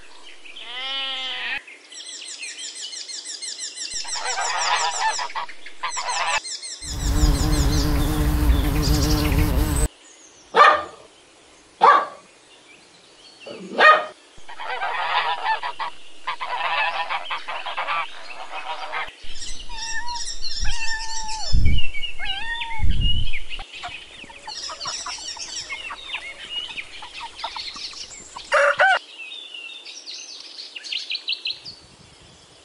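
Egyptian goose honking, a run of repeated harsh calls in the middle of a string of animal sounds. It opens with a short sheep bleat and ends with high bird chirps.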